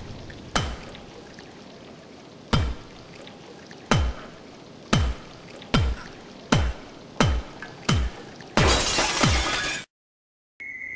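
Dramatic intro sound effects: eight deep booms, each dropping sharply in pitch, coming faster and faster. They end in a crashing, shattering burst of about a second that cuts off suddenly.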